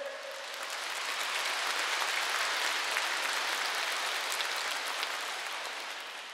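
A large audience clapping. The applause builds over the first second or so, holds steady, and thins slightly near the end.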